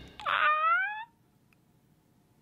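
A man's short, high-pitched excited cry that rises in pitch and lasts under a second, near the start, followed by near silence.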